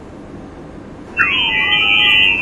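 A sensory substitution device's image-to-sound rendering of a sad-face line drawing, played from a laptop after about a second of quiet room noise. A pair of tones glide apart and back together to trace the round outline of the face. Two short steady high tones mark the eyes, a hissy high band marks the brows, and a lower tone that rises and falls traces the frowning mouth.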